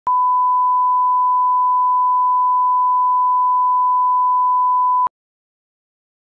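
Steady 1,000-hertz reference test tone that accompanies colour bars, a single unchanging pure beep that lasts about five seconds and cuts off abruptly.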